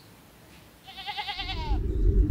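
A sheep bleats once about a second in: a quavering call of under a second that falls away at its end. A loud low rumble sets in just after the bleat begins.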